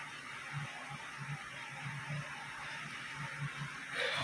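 Quiet room tone: a steady hiss with faint, irregular low blips, and no calls or talking.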